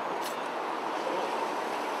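Steady city street background noise, a hum of traffic with no distinct events.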